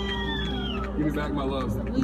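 A high, whooping voice call that rises and then falls in pitch over about a second, followed by people talking, over a steady low hum.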